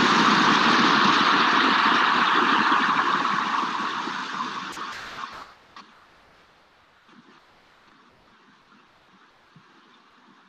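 Steady rush of shallow river water flowing over rocks and weed, which fades over the first five seconds or so down to a faint hiss.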